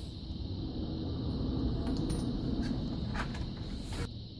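Handling noise of small parts of a 3D-printer filament cartridge being fitted together by hand: a steady low rumble with a few faint clicks, around two seconds in and again a little after three seconds.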